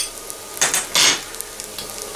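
Melted butter sizzling steadily in a saucepan of Rice Krispies on a hot hob ring, with a short click at the start and two brief scraping rustles about half a second apart in the middle.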